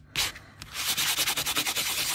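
A nail buffer rubbed rapidly back and forth over embossed, inked aluminium metal tape, a fast scratchy scrubbing that starts about half a second in. The buffing wears the colour off the raised design so the bare metal shows.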